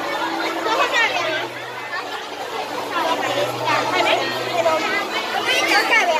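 Chatter of several people talking over one another, with a faint steady low hum in the middle.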